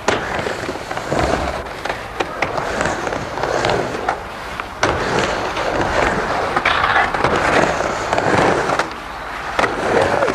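Skateboard wheels rolling and carving on a wooden mini ramp, with several sharp clacks of trucks and board hitting the coping.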